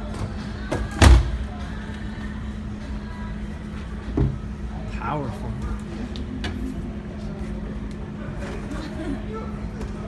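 Century Wavemaster free-standing punching bag being hit or shoved: one loud thud about a second in and a smaller one about four seconds in, over a steady hum and distant voices.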